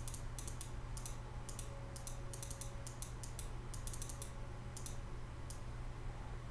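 Computer keyboard keystrokes and mouse clicks, irregular and a few a second, over a low steady hum.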